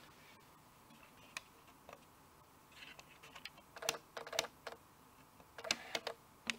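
Faint, scattered light clicks and taps of fingers handling a small circuit board. A few come in the first half, and they turn more frequent from about halfway.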